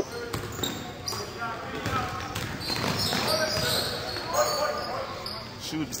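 Basketball dribbled on a hardwood gym floor, a series of sharp bounces, with spectators' voices and calls around it.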